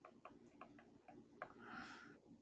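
Near silence with a few faint, irregularly spaced clicks of a stylus tapping on a pen tablet as a word is handwritten, then a soft hiss near the end.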